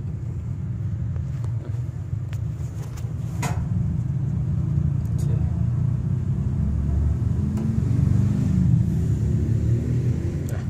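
Steady low machine rumble that swells slightly near the end, with a few light clicks, one a little louder about three and a half seconds in.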